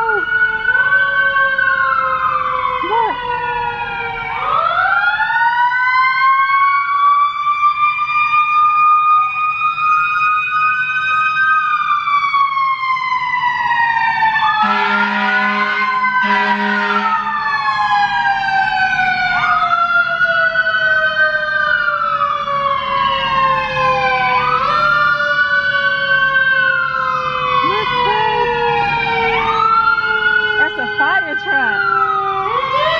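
Several emergency-vehicle sirens wailing at once, their pitches rising and falling out of step with one another. About halfway through, two short horn blasts sound one after the other.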